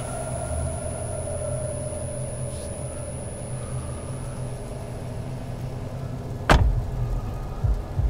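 A low steady rumble, then one sharp, loud bang about six and a half seconds in, followed by a smaller knock near the end.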